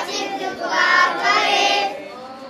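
A group of young children singing together.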